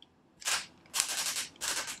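Spring-loaded ratchet handle on a plastic S-type speedlite bracket being worked to tighten it, giving three short bursts of rapid ratchet clicks.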